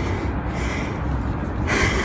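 A man's sharp, breathy intake of breath near the end, as he fights back tears, over a steady low background rumble.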